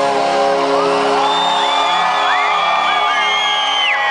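A live rock band's final chord is held and rings out as the song ends. Over it, a large concert crowd cheers, shouting and whooping more and more from about a second in.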